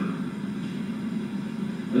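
A brief pause in a man's recorded talk, filled by a steady low hum of the recording's background noise.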